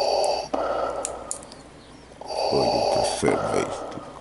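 A man's heavy, close-up breathing in long, slow breaths. The second breath, starting about two seconds in, carries a low voiced groan.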